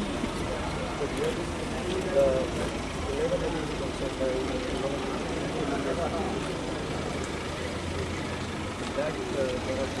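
Indistinct conversation among a small group of people over the steady low hum of an idling vehicle engine.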